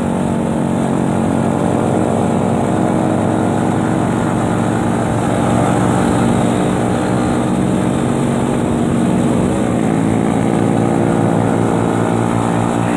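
Motorcycle engine running steadily under way, its pitch rising about two seconds in, then dipping and climbing again near the ten-second mark.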